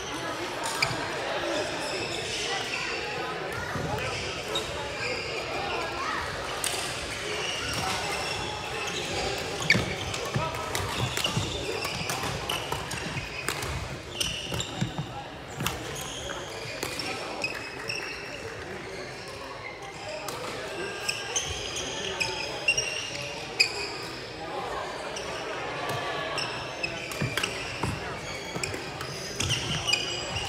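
Badminton rally: sharp, irregular pops of rackets striking the shuttlecock, over background voices echoing in a large sports hall.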